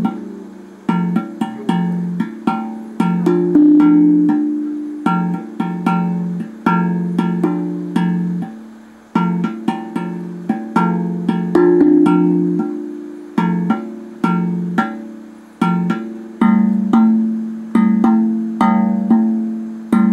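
DreamBall steel tongue drum played with the fingers: a steady run of struck, ringing notes in low and middle pitches, each note decaying slowly, in a loose rhythm.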